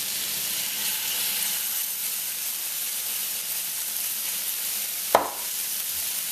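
Vegetables and oil sizzling steadily in a hot wok as oyster sauce is poured into the cleared centre of the pan. There is a single sharp knock about five seconds in.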